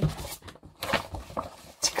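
A paper picture book being handled: lifted off the table and held up, its pages rustling and rubbing with a few light knocks.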